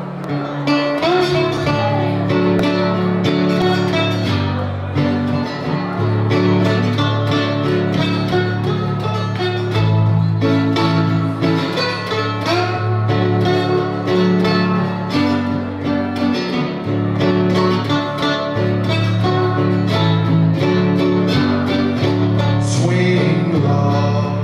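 Steel-bodied resonator guitar played solo in a country-blues style: a steady thumbed bass under picked treble notes, some of which glide in pitch.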